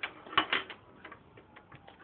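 Clicks and ticks of a hand tool turning a grille screw on a Dodge Ram's radiator support. A few sharper clicks come about half a second in, then lighter, irregular ticks follow.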